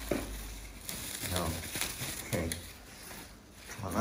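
Plastic bubble wrap crinkling and rustling as it is handled and pulled off a packed patch panel, with small crackles throughout.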